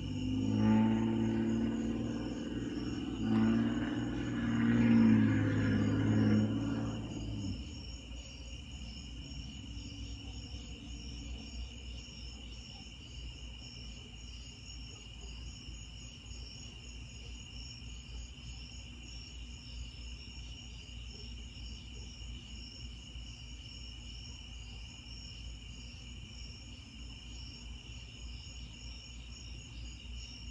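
Steady chorus of night insects, a high trill at two pitches that runs on unbroken. For the first seven or so seconds a louder low droning hum sits over it, with a short break about three seconds in.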